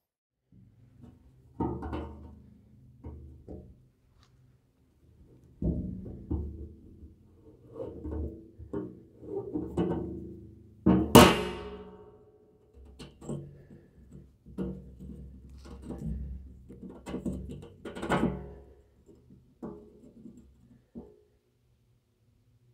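A tool knocking and scraping on the threaded bung cap and lid of a steel drum as the cap is worked loose. The empty drum rings hollowly. The loudest knock, about halfway through, leaves a ringing tail.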